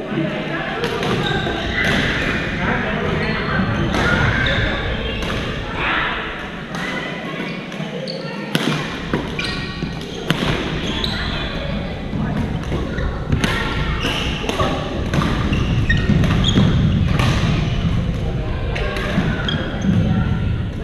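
Badminton rackets striking shuttlecocks in rallies across several courts: sharp pops at irregular intervals, echoing in a large gym hall over the sound of players' voices.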